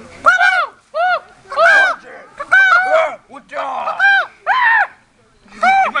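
Young voices making a high, hooting 'secret call': a string of short rising-and-falling hoots, roughly two a second, with a brief pause near the end.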